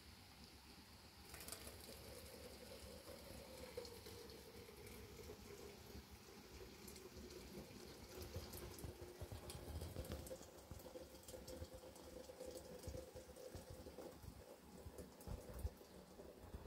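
Faint sound of a kettle heating on a heater stove: a soft steady hiss with a faint wavering tone, and a few soft knocks as it is handled.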